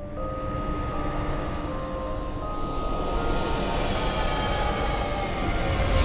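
Dark horror-trailer score: held notes over a dense, low rumbling noise that swells steadily louder, a tension-building riser.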